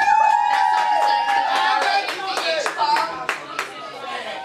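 Hand clapping, about four claps a second, as applause at the end of a karaoke song, with a long high "woo" of cheering held for about two and a half seconds before it slides down.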